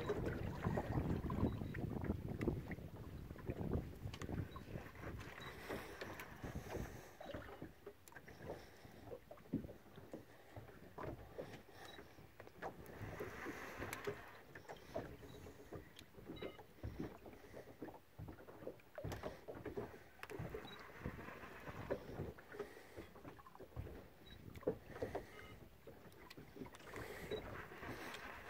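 Small boat at sea: water lapping against the hull with scattered knocks and clicks, and wind rumbling on the microphone, strongest in the first few seconds.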